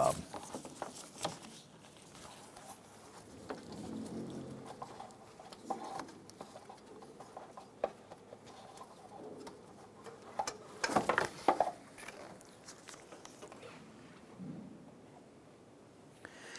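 Faint scattered clicks, taps and rustles of hands working among parts in a car's engine bay, with a louder burst of rustling and scraping about eleven seconds in.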